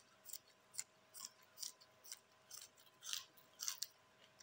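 Crunchy chewing of a raw green vegetable: a quick run of about ten short, crisp crunches, two or three a second.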